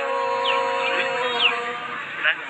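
Sli folk singing from Lạng Sơn: a woman's voice holding a long final note that slowly fades out over about a second and a half. Two short, high, falling chirps sound over it.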